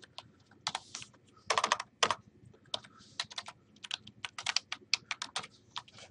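Typing on a computer keyboard: a run of irregular key clicks, bunched more densely about one and a half to two seconds in.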